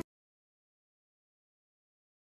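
Silence: a blank stretch of the audio track with no sound at all.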